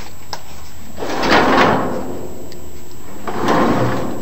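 Louvered closet doors being handled and slid along their track: two rough scraping rushes, each about a second long, the second beginning a little past the three-second mark.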